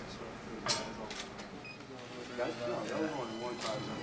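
Indistinct voices of people talking in the background in a small room. There is a short sharp click under a second in and a brief faint beep near the middle.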